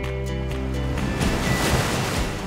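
A sustained music chord, then about a second in the rushing surge of an ocean wave breaking over rocks, swelling louder toward the end.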